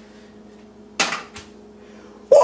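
A Keurig K-cup pod landing in a Keurig brewer's open pod holder about a second in: one sharp plastic clack, then a smaller knock as it settles, over a faint steady hum.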